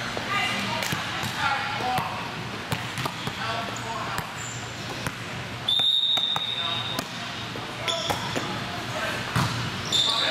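Indoor volleyball play in a large echoing gym: sharp slaps of the ball being hit and players' voices calling, with a referee's whistle held for a little over a second just past halfway and a shorter blast a couple of seconds later.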